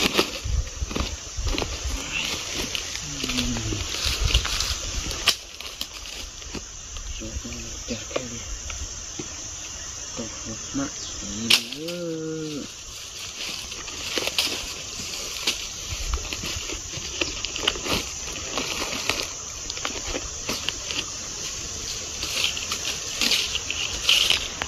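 Irregular rustling and crackling of dry leaf litter and brush being stepped on and handled, with a sharp snap about eleven and a half seconds in and a few brief murmured words.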